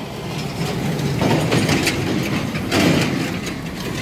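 Road traffic: a steady vehicle engine hum with a wash of noise that swells louder twice, about a second in and again near three seconds.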